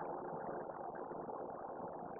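A steady low background hum with nothing else standing out.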